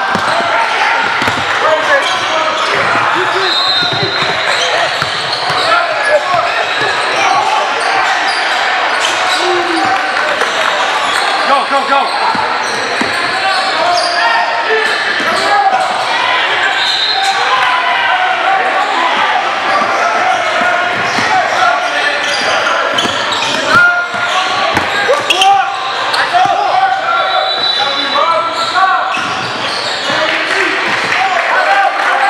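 Live gym sound of a basketball game: a basketball bouncing on a hardwood court amid constant indistinct voices of players and spectators, echoing in a large hall.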